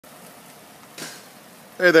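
Faint steady background hiss with a short, soft noise about a second in, then a man's voice begins speaking near the end.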